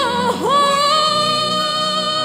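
Gospel music: a high solo voice slides up into a note, dips briefly, then slides up again into a long held note over a soft, steady accompaniment.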